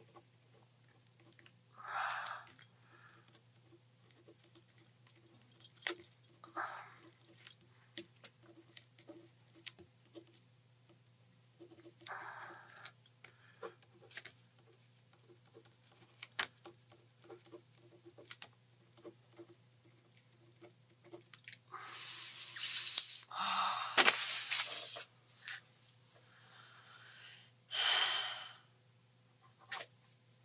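A man's short sharp breaths and sniffs every few seconds, with small clicks of a pen on paper, over a steady electrical hum. Near the end comes a louder stretch of breathing and paper rustling.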